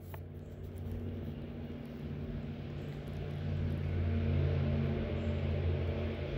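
A low, steady mechanical hum, like an engine or motor running, that swells slightly in the middle and then eases.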